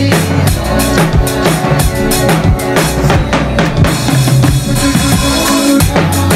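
Drum kit played in a busy Afro-style groove of kick, snare and cymbal strokes, along to a song with a steady bassline and chords.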